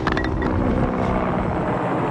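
A steady engine drone from a running machine, such as a vehicle or aircraft, holding an even level throughout.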